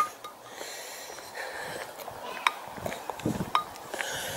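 Quiet street ambience with a few soft, sparse clicks and low taps from someone walking with a handheld camera.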